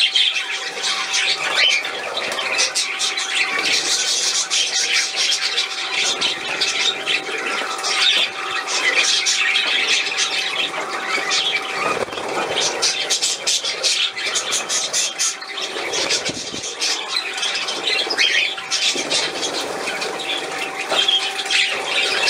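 Budgerigars chattering and squawking continuously, with the splash of a small fountain jet in a water bowl as the birds bathe.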